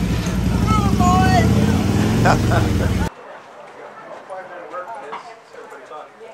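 Coin-operated mechanical horse ride running, a loud low rumble with whoops over it. It cuts off suddenly about three seconds in, and quieter chatter follows.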